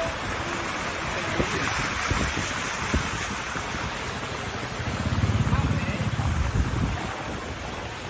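Steady rushing wind noise on the microphone. A louder low rumble swells about five seconds in and fades by seven.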